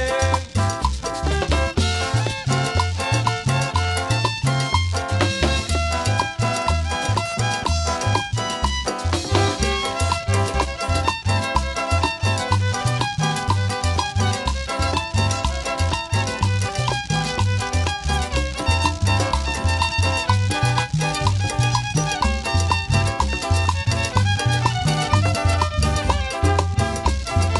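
Live chanchona band playing an instrumental dance passage, with a bowed violin over guitar, upright bass, timbales and hand drums. The bass notes pulse on a steady beat throughout.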